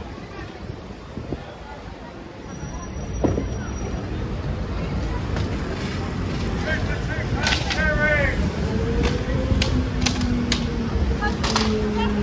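Busy street ambience: a steady low traffic rumble with people talking nearby. In the second half come several sharp knocks and a low hum that slowly falls in pitch.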